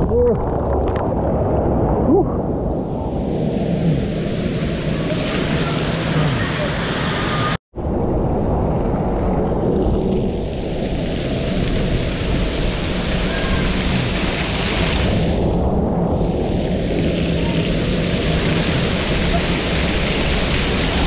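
Water rushing and splashing around a rider going down a plastic water slide, with heavy rumble on the microphone. After a sudden cut about a third of the way in, a steady wash of water pouring and splashing down onto a staircase from overhead sprays.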